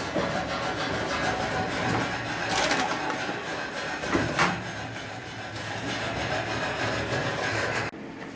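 Semi-automatic notebook cutting machine running with a steady mechanical hum. Two sharp clunks come from the machine, one a little under three seconds in and one just past four seconds.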